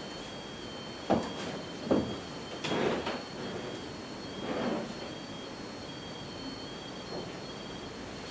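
A few dull knocks and creaks from people moving on old wooden floorboards, over two faint, steady high-pitched electronic tones.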